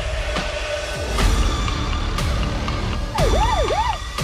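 Dark electronic trailer score with a deep, pulsing bass and a sharp hit about once a second. Near the end a wailing, siren-like tone sweeps up and down twice.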